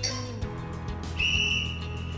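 Background music, then about a second in a single long, high steady tone sounds: the interval timer's signal marking the start of the 45-second exercise.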